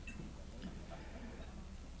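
Faint room tone with a steady low hum and a few faint ticks.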